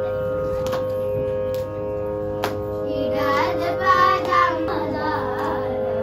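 Electronic shruti box holding a steady drone, with a few sharp clicks in the first half. Children join in singing a Carnatic melody with wavering ornaments about three seconds in, for a couple of seconds.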